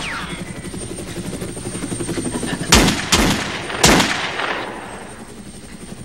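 Gunshots: one sharp crack right at the start, then three more in the middle, the first two close together and the third a little apart, each trailing off in echo. Under them runs a steady, low, rhythmic chopping.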